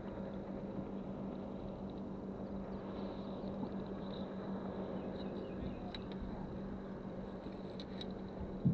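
Steady low hum with water and wind noise on a bass boat, and a few faint clicks in the last few seconds.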